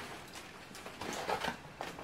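A cardboard box being handled: soft scraping and rustling about a second in, then a sharp tap shortly before the end.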